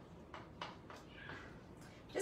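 Quiet room tone with a few faint, light clicks or taps scattered through it.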